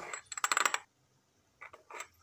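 Metal spoon clinking and scraping against the inside of a glass jar while scooping instant coffee granules: a busy run of clinks in the first second, then a shorter run near the end.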